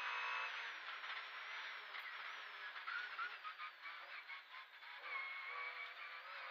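Škoda 130 LR rally car's rear-mounted four-cylinder engine, heard from inside the cabin, pulling in fifth gear at first. It then comes off the throttle as the car brakes and shifts down to second for a bend, and picks up again near the end.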